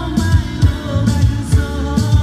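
A man singing live into a microphone over amplified music with a steady beat of about two low thumps a second and cymbal strokes.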